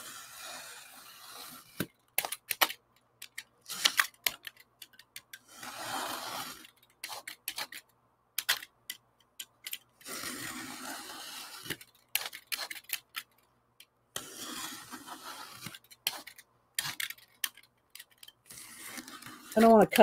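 A box cutter with a wallpaper-type blade slicing through a stack of book pages along a metal ruler. There are three longer scraping strokes of the blade through the paper, with clicks and taps of the knife and ruler between them.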